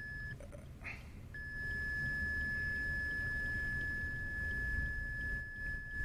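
A steady, thin, high-pitched electronic whine that cuts out about half a second in and comes back about a second later, over a low rumble.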